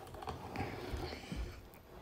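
Faint handling noise of a wooden embroidery hoop and its stretched cloth being picked up and tilted: light rustling with a few small ticks and soft knocks.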